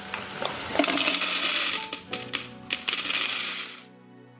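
Skittles pouring from the bag into a clear plastic dry-food dispenser canister: a dense rattle of hard-shelled candies striking the plastic and each other, which stops just before the end.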